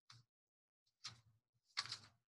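Faint paper rustles of a book's pages being turned: three short rustles, the last the loudest, while the next kinah's page is looked up.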